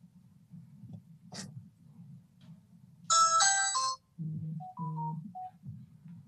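A phone ringtone going off: a short, loud electronic melody of a few bright notes about three seconds in, followed by a quieter run of lower tones.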